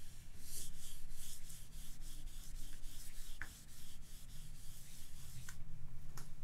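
Marker being wiped off a glass lightboard: quick back-and-forth rubbing strokes, about four a second, that thin out after about three seconds.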